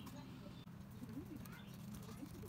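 A bird calling twice in low, rising-and-falling notes over a steady low hum.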